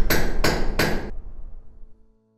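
Closing sting of a brand sound logo: three sharp, hammer-like knocks about a third of a second apart in the first second, over a low musical swell that fades out near the end.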